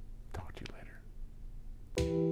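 A brief, soft vocal sound from a man, under a second long, about half a second in, then quiet room tone; music starts right at the end.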